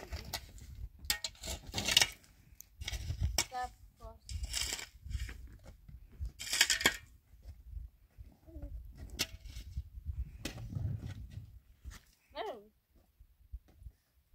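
A shovel scraping and digging into dry, stony soil: several short gritty scrapes over the first seven seconds. Near the end a small child calls out briefly.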